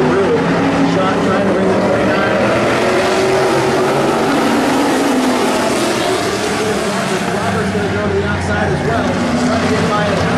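A pack of street stock race cars running together on a dirt oval, their engines racing under throttle with the pitch rising and falling as they go through the turn.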